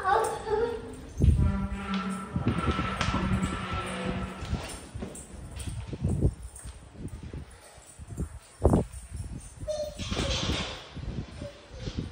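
Voices in a home, with a few sharp knocks and thumps scattered through, one standing out near the end.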